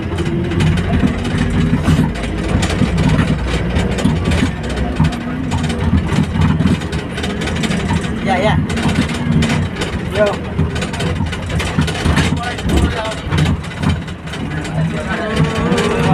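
A bus in motion, heard from inside the cabin: a steady low engine and road rumble with frequent rattles and knocks from the body and fittings.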